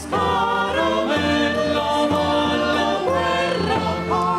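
Choral music: several voices singing together in long held notes, the chord changing about every second.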